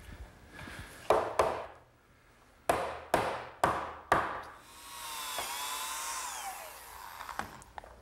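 A mallet knocking a teak bench arm down onto its glued tenons: six sharp blows, two about a second in and four more in quick succession. After them a motor's whine rises, dips and winds down.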